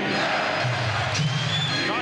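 Arena crowd noise and cheering, with music playing over the arena's public-address system.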